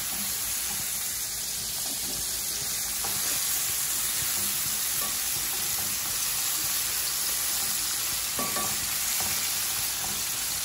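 Lobster meat frying in hot oil in a nonstick pan, a steady sizzle, with a few light taps as tongs turn the pieces.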